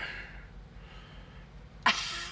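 A quiet pause over a faint, steady low hum, then near the end a woman bursts out laughing.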